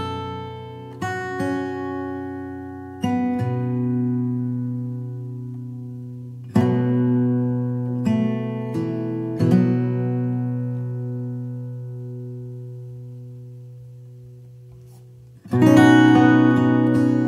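Slow acoustic guitar music: sparse plucked chords and single notes, each left to ring and fade. A long, slowly dying chord fills the second half, and a louder strum comes near the end.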